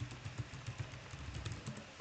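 Typing on a computer keyboard: an irregular run of light key clicks as a word is typed in.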